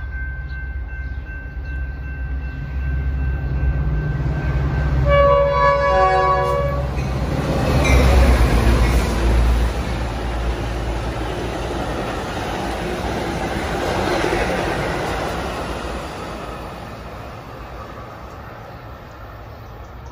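Two Metra diesel locomotives hauling an express commuter train through a station without stopping. The engines' rumble builds, with one horn blast of about a second and a half about five seconds in. The locomotives pass loudest about eight seconds in, then the bilevel cars rush by and the sound fades away near the end.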